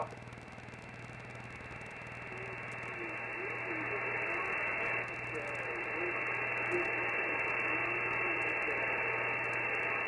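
Shortwave band noise from an Icom IC-7300 receiving 20-metre SSB through its 2.4 kHz filter: a steady hiss with the highs cut off, slowly growing louder, with a faint, unintelligible voice under it and a low steady hum.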